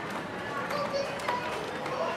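Faint footsteps on a concrete walkway, with quiet voices murmuring in the background.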